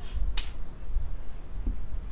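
Low, fluttering rumble of wind buffeting the microphone, with a single sharp click about half a second in.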